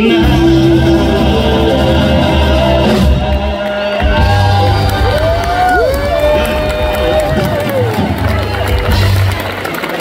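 Live band playing the last bars of the song while the audience cheers and whoops. A few long whoops rise and fall in pitch about halfway through.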